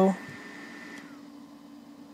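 Small 6-volt helmet cooling fans whirring as they are switched from high to low. Their thin whine and hiss drop away about a second in, leaving a steady low hum.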